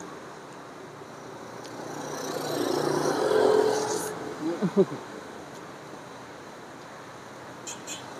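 A motor vehicle passes by, its engine sound swelling to a peak about three and a half seconds in and then fading away. A few short hums from a person eating follow, with faint mouth clicks near the end.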